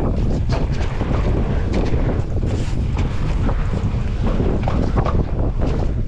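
Wind buffeting the microphone of an action camera on a mountain bike rolling down a dirt jump trail, over a steady low rumble from the tyres on dirt. Frequent short knocks and rattles from the bike bouncing over bumps.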